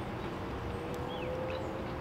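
Outdoor street ambience: a steady low rumble of background noise with a faint tone that rises slowly, and a couple of short, faint chirps about halfway through.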